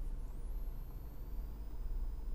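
Low steady hum and hiss of background noise with no speech, and a faint high-pitched whine that rises just after the start and then holds.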